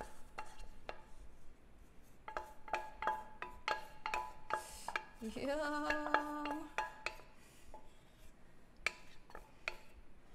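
Wooden spoon scraping and tapping against the inside of a stainless steel saucepan as sticky melted marshmallow is scraped out: a run of light taps and scrapes, some with a faint ring from the pan, thinning out in the second half.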